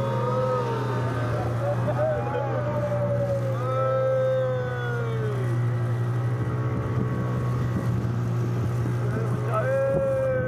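Boat engine running with a steady low drone as the boat moves through rough water. People aboard let out long, drawn-out shouts over it in the first half and again near the end.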